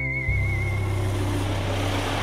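Background music, a held wavering high note over a steady bass, under the rising rush of an Eddie Stobart articulated lorry driving past close by.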